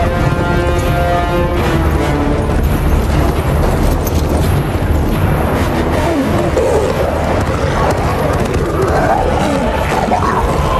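Film-score music with held notes over the first couple of seconds, then a dense, loud battle mix of charging animals, with growls from the beasts in the second half, under the music.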